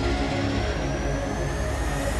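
News bulletin opening theme music, with a slowly rising sweep building through it.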